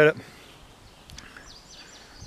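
Faint birds chirping in high, short notes from about a second in, over quiet outdoor background noise.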